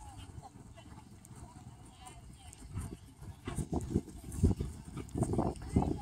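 A horse's hooves thudding on grass turf at a trot, a steady beat of about three a second that starts a few seconds in and grows louder as the horse comes close.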